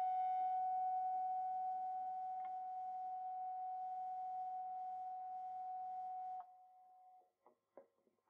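The last held note of a punk rock song ringing out as a single steady tone, slowly fading, then cut off about six and a half seconds in; a few faint clicks follow.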